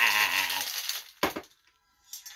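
A man's drawn-out, wavering laugh over ice rattling in a metal cocktail shaker, both fading out within the first second. About a second and a quarter in comes a single sharp knock.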